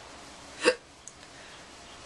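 One short, abrupt sound from the throat, such as a hiccup or gulp, about two-thirds of a second in, against faint room tone.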